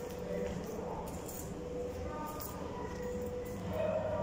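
Indistinct voices in the background, with no clear words. They run on as a steady murmur with a held tone, and there are a few faint clicks.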